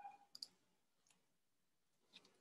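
Near silence with a few faint clicks, bunched about half a second in, and a brief faint tone right at the start.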